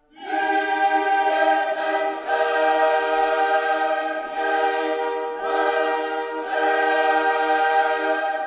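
Ambient music of wordless choir voices holding long, sustained chords. The sound swells in at the start, and the chord shifts every second or two.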